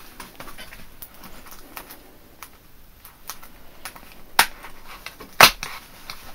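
Fingers picking and prying at a cardboard mailer box's flap: scattered light clicks and scratches, then two sharp snaps, about four and a half and five and a half seconds in, as the cardboard comes free.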